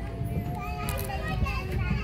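Children's voices chattering and calling, with no clear words, over a steady low rumble.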